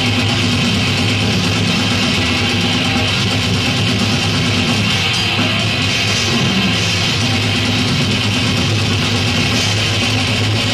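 Brutal death metal band playing live: a dense, loud, unbroken wall of distorted guitars.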